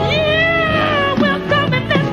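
Recorded pop-soul song: a woman's lead vocal holds one high note that swells and falls over about a second, then moves into shorter sliding phrases over a steady band backing.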